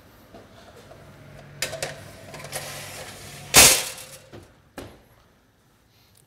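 An aluminium baking tray of empty glass jars being put into an oven, with jars clinking and a low hum, then the oven door shut with one loud bang about three and a half seconds in, followed by a couple of lighter knocks.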